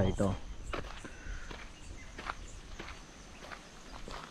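Footsteps on a dirt road at an unhurried walking pace, about one step every three quarters of a second, right after a man's voice stops.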